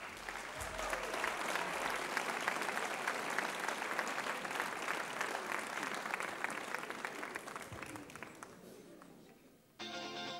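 Studio audience applauding, the clapping dying away over the last few seconds. A band starts playing just before the end.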